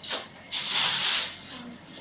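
Plastic shopping bag rustling as it is handled and shaken, a crinkly hiss that starts about half a second in and fades out near the end.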